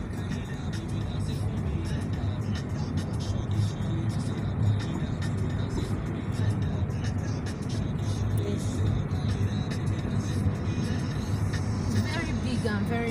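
Car driving slowly, heard from inside the cabin: a steady low road and engine rumble, with music playing in the background.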